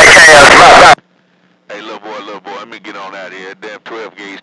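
Speech only. A very loud voice breaks off about a second in. After a brief silence a quieter, thinner-sounding voice comes in over a steady low hum, as two-way radio talk.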